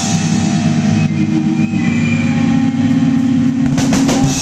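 Live heavy band playing at full volume: a drum kit with fast, dense drumming under a held note from the amplified guitars, and a sharp hit near the end.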